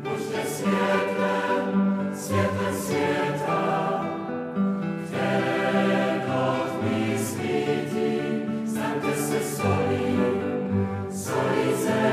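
A choir singing a slow hymn in long held phrases, each a few seconds long.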